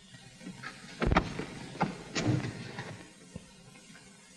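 A few clunks and knocks from an open late-1930s convertible as people climb out of it, the loudest about a second in.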